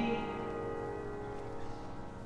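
The song's final piano chord ringing out and slowly fading after the last sung line.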